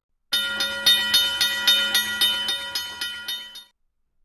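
A short intro sound effect: rapid, evenly spaced metallic strikes, about four a second, over several steady ringing tones. It starts abruptly and fades away after about three seconds.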